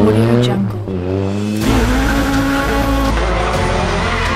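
Rally car engine revving up, mixed with background music whose deep bass comes in about a second and a half in.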